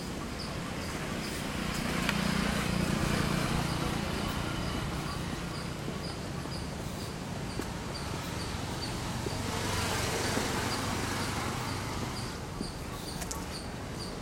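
Traffic passing on the road, swelling twice, about two seconds in and about ten seconds in, while a high insect chirp repeats evenly about twice a second.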